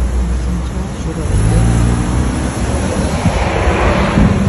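Road traffic noise with a vehicle engine rumbling, recorded from a car on the road, with faint indistinct voices.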